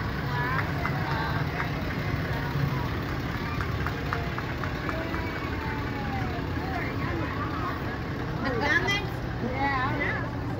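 Pickup truck engine running at a slow crawl as it tows a loaded flatbed trailer past, a steady low hum under the chatter of people nearby.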